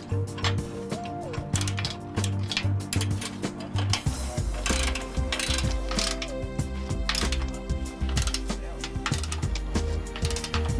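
Ratchet wrench clicking in quick, irregular runs as the plow's mounting bolts are tightened, over background music.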